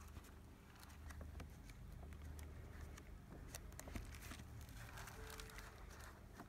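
Stamp album pages being turned by hand: faint, scattered flicks and rustles of stiff paper over a low steady hum.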